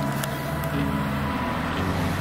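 Road traffic: a motor vehicle's engine running steadily on the road beside the kerb, a continuous hum with no sudden events.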